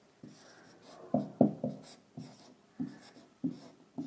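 Marker pen writing on a whiteboard: a string of short separate strokes starting about a second in.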